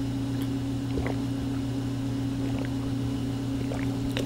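Steady low hum of a laundry machine running, holding an even pitch, with a few faint small clicks over it.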